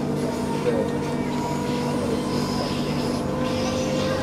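Steady hum of an electric suburban passenger train running between stations, heard from inside the carriage: several steady electric tones over the low rumble of the car.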